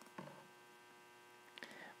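Near silence: a faint steady electrical hum in the recording, with a couple of faint brief noises, one just after the start and a few small ticks near the end.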